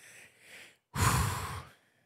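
A single breathy 'whew' sigh, an exhale about a second in lasting under a second.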